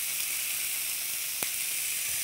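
Raw steak sizzling steadily on the preheated ribbed plate of a T-fal OptiGrill electric grill, its lid open. There is a single click about a second and a half in.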